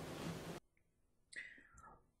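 Faint room noise that cuts off abruptly at an edit about half a second in. Near silence follows, broken by a brief, faint vocal sound a little past a second in.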